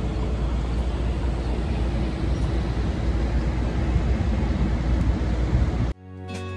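Outdoor city ambience: a steady, rumbling noise of traffic and open air, fairly loud, cutting off suddenly near the end.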